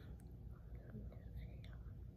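A soft, faint voice, close to a whisper, over a low steady room hum.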